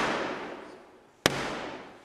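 Black Rod's ebony staff knocking on the shut oak door of the House of Commons chamber: the ceremonial knocks demanding entry. The echo of one knock dies away, then another sharp knock comes a little over a second in and rings out in the hall.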